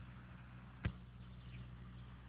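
Quiet background with a steady low hum and faint hiss, broken by one short sharp click a little under a second in.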